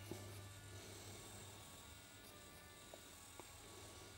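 Near silence with a faint steady buzz, from a 00 gauge Dapol D-Class model locomotive's small electric motor running slowly as it strains to haul its train up a gradient. Two tiny ticks come in the second half.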